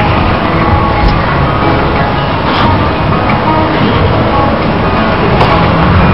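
Steady background noise of a gymnastics arena and its audience, with music playing over it.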